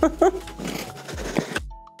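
Laughter over a short burst of music that fades down near the end.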